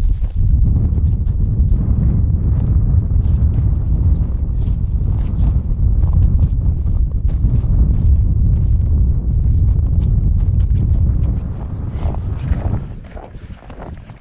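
Wind rumbling on the microphone, with scattered crunches of feet and a dog's paws on snow. The rumble drops away near the end.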